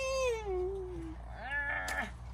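A cat meowing: one long meow that falls in pitch, then a shorter, higher meow near the end.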